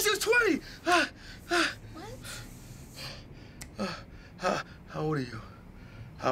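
A man and a woman gasping and moaning in passion. Quick breathy gasps and high moans come in the first two seconds, then three lower groans, falling in pitch, about four to five seconds in.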